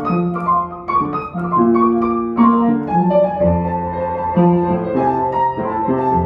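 Solo upright piano played: a moving melody over changing chords, with a deeper bass line coming in about halfway through.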